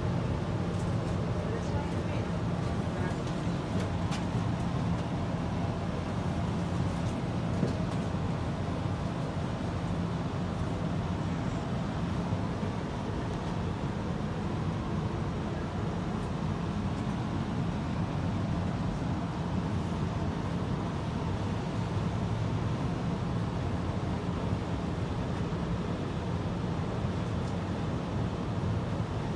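Steady interior noise of a TTC streetcar: a low, even hum under the wash of road traffic outside, as the car moves slowly and then stands still.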